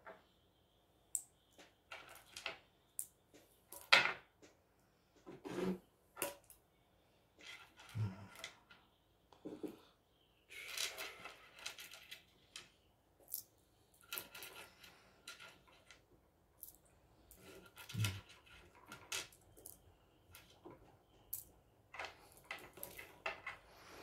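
Small crystal stones clicking and clattering as they are picked from a tray and set down on a board: scattered light taps and knocks, with a brief rustle about halfway.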